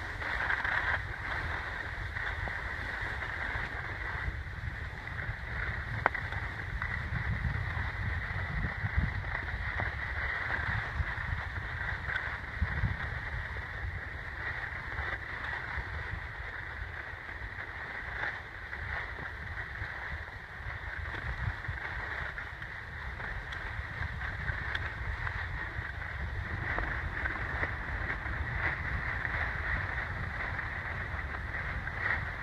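Skis sliding and scraping over packed snow, with wind rushing over the microphone: a steady hiss over a low rumble. A couple of brief knocks come around six and nine seconds in.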